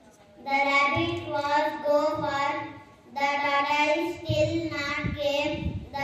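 A boy singing into a microphone in a high child's voice, with long held notes. He starts about half a second in and pauses briefly near the middle.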